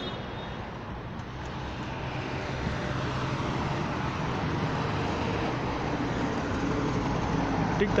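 Passing road traffic, growing gradually louder as a truck's engine draws near, with a low steady engine hum under the noise.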